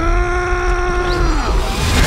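A loud, pitched cry that sweeps up, holds one note for over a second and then drops away, over a deep steady rumble.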